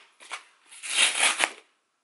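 Cardboard book mailer being torn open by its tear strip: a short rip, then a longer tearing run of about a second that stops abruptly when the strip breaks.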